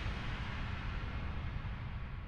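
The tail of an animated logo ident's whoosh sound effect: a low rumble under a hiss that fades steadily away.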